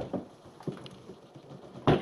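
Knocks and clunks of a portable stereo's detachable speaker cabinets being handled and set down on a wooden floor. There are a couple of light knocks, then a louder double knock near the end.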